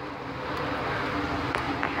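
Steady hum of street traffic.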